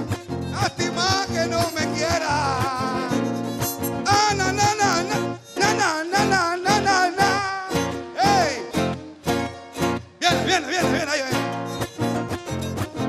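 Live folk-band music: strummed acoustic guitar and a small guitar keep an even rhythm while a violin plays the melody.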